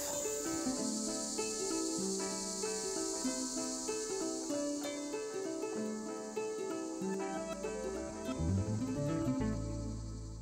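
Background music of plucked guitar notes over a steady, high chorus of crickets; a low bass note comes in near the end.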